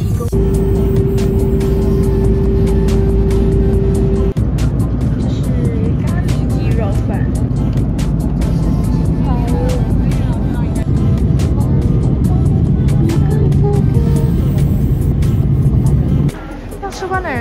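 Jet airliner cabin noise: a steady low roar of engines and airflow, with background music over it. A steady tone holds through the first four seconds.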